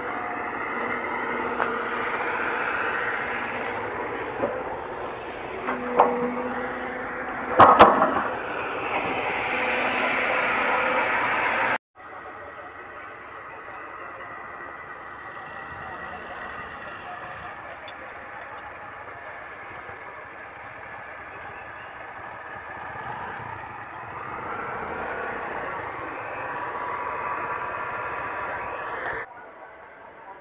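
Motorcycle engine running, its pitch rising and falling as it revs. A few sharp knocks near six and eight seconds in are the loudest sounds. The sound drops abruptly about twelve seconds in and carries on quieter, swelling again near the end.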